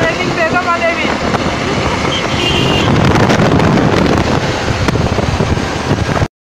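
Wind rushing over the microphone and road noise from a moving vehicle, with a voice in the first second and a brief high tone about two seconds in.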